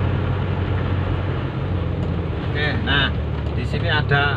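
Car engine running with a steady low hum under tyre noise on a wet road, heard from inside the cabin.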